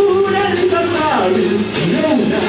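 Live pop-rock song: a man singing a melody into a microphone over electric guitar.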